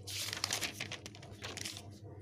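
Paper rustling and crinkling as a ruled notebook page is turned over, with a few sharper crackles through it.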